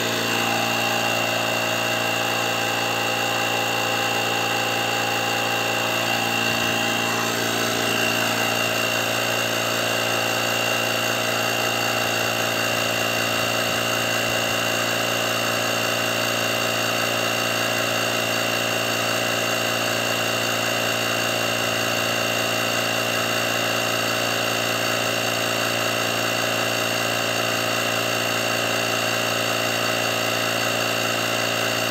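Parkside PKA 20-LI A1 20 V cordless compressor running steadily as it inflates a car tyre towards its preset pressure: an even motor hum with a high whine.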